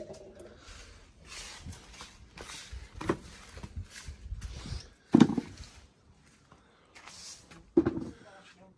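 Handling noises as fallen apples are picked up off the ground by hand: a run of short rustles, a small knock about three seconds in, and a short, louder low sound about five seconds in.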